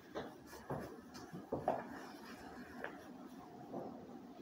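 Pages of a book being leafed through and handled: several short paper rustles and light knocks.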